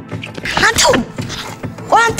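A person's loud, breathy vocal outburst with a falling pitch about half a second in, then a raised voice starting just before the end, over soundtrack music.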